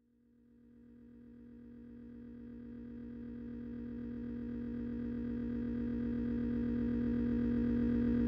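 An electronic drone of several steady held tones, fading in from silence about a second in and growing steadily louder, with a fast low pulsing underneath.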